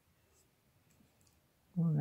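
A few faint, light clicks from crocheting with a metal hook, then a woman's voice starts near the end.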